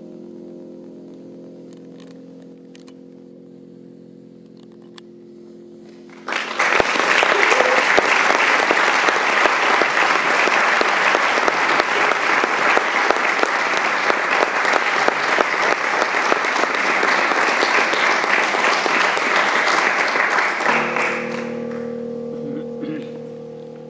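Audience applause, starting suddenly about six seconds in as a held low chord dies away, then going on evenly for about fifteen seconds before it fades near the end, when a new sustained chord begins.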